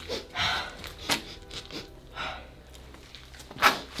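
A person sniffing the air in short, noisy breaths: about half a second in, about two seconds in and, loudest, near the end. There is a sharp click about a second in.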